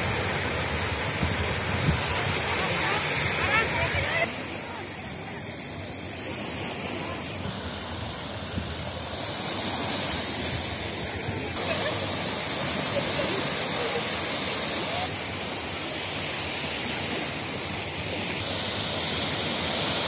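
Small sea waves breaking and washing up a sand beach: a steady rushing surf noise that drops in level about four seconds in and rises again near twelve seconds.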